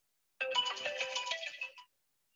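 A smartphone plays a short melodic electronic tone sequence, like a ringtone or alert jingle, lasting about a second and a half and starting about half a second in.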